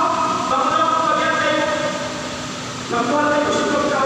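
A man's voice lecturing into a microphone, amplified and echoing in a hall, with long drawn-out syllables and a short pause about three seconds in.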